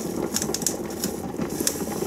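Water in a large stovetop pot at a slow boil, a steady bubbling hiss with scattered small clicks and pops.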